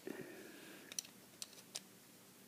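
Faint handling noise of a screwdriver and small parts: a short rustle at the start, then a few sharp little clicks about a second in.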